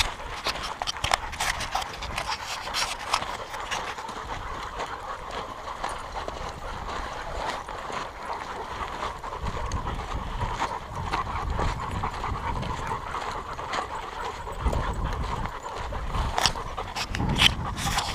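A pack of dogs on the move close around the listener: panting, with paws and footsteps crunching steadily on a dirt-and-gravel trail. Sharper crunches come near the end.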